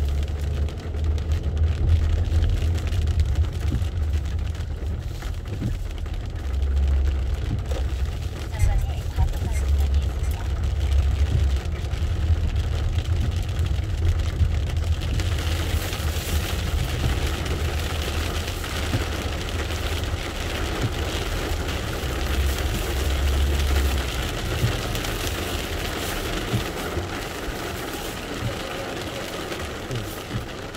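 Inside a car driving on a wet road in rain: a steady low engine and road rumble, with the hiss of rain and wet tyres growing clearly louder about halfway through.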